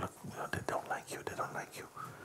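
A man whispering softly and breathily, too low for the words to be made out.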